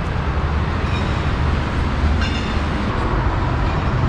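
Steady low rumble of road traffic, with a brief faint high-pitched tone about two seconds in.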